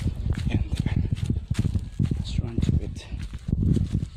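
Irregular knocks and rustles, with brief indistinct talk a little past halfway.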